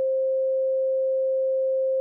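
A steady pure sine tone a little above 500 Hz, held on its own without music.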